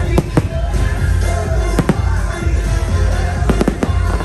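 Aerial fireworks bursting with sharp bangs: two in the first half second, one a little under two seconds in, and a quick cluster near the end, over loud music with a heavy bass.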